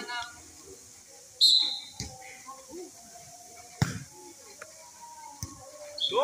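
A referee's whistle blown once, short and shrill, about a second and a half in, the loudest sound here, signalling the serve. A couple of seconds later comes the sharp smack of a volleyball being struck, with a few fainter knocks, and players' voices around it.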